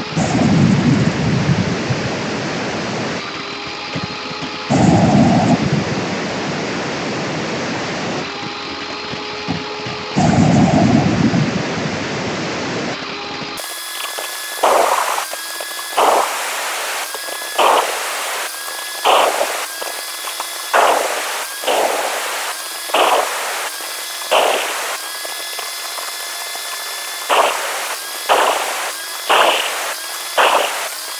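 Electric wet tile saw running with its water feed on, its blade cutting thin slabs of clay brick into small pieces. The cutting load comes in surges: three long cuts in the first half, then a quick run of short cuts about one every second or so.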